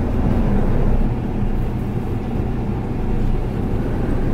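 Twin diesel engines of a 1999 Viking 60 motor yacht idling, a steady low rumble heard from inside the enclosed helm station.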